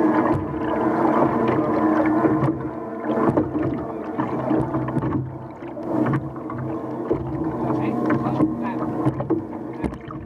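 Outboard engine of an OSY-400 racing boat running at low speed, a steady hum of several tones that swells and fades a little, with scattered clicks and knocks.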